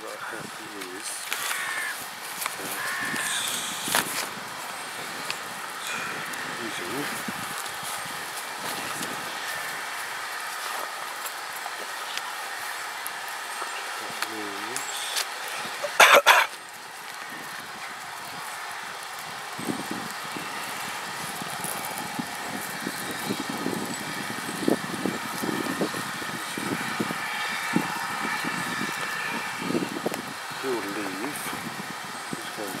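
Steam locomotive working a train away from the station, its exhaust and running noise under people talking nearby. A short, sharp, loud noise comes about halfway through.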